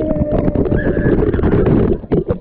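Water pouring and splashing straight onto a GoPro camera's waterproof housing: a loud, dense patter of drops hitting the case over a heavy rush of water.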